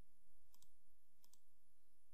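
Computer mouse clicking: two quick double clicks, about half a second and a second and a quarter in.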